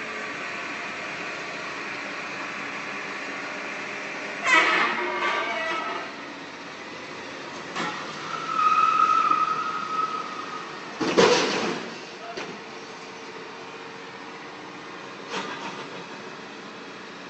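Flatbed tow truck running with a steady hum while it loads an SUV, broken by a clatter of knocks about four and a half seconds in, a high squeal held for about a second and a half, and then a loud bang a little after eleven seconds.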